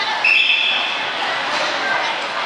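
Referee's whistle blown once, a short steady high tone about a quarter second in, signalling the start of the wrestling action, over gym crowd chatter.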